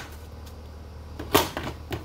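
A sharp knock about one and a half seconds in, followed by a couple of lighter knocks: a plastic stormtrooper figure being struck and knocked over.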